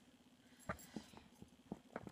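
Faint handling noise: a few light clicks and knocks as rubber toy ducks are pulled from a mesh bag.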